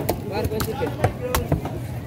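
A large fish knife chopping into a tuna on a chopping block: several sharp chops a few tenths of a second apart while the head is being cut off, with voices chatting in the background.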